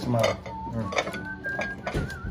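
Ceramic plates and serving utensils clinking a few times as ribs are plated, with someone whistling a thin high note in the second half.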